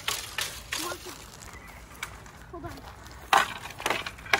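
Dry wooden sticks knocking and cracking in a few short, sharp hits, the loudest a little over three seconds in.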